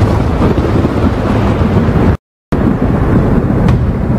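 Loud, deep rumbling drone of a dramatic soundtrack, without a clear melody, broken by a sudden total dropout to silence for about a third of a second just past the middle.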